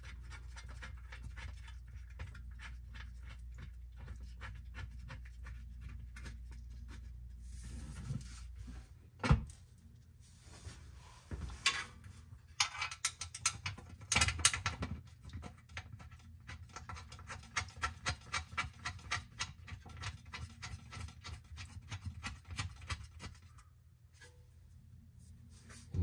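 Small metallic clicks, ticks and scrapes as transmission pan bolts are threaded in by hand on an Allison 1000 transmission pan, with a sharp knock about nine seconds in. A steady low hum runs under the first nine seconds or so.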